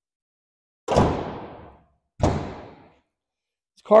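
The hood of a 1980 Pontiac Firebird Trans Am being shut: two thuds about a second apart, each dying away in the showroom's echo.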